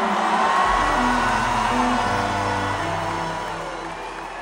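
Music over an arena sound system, a stepped low melody over a long held bass note, with the crowd's whoops and cheers under it; the music fades down toward the end.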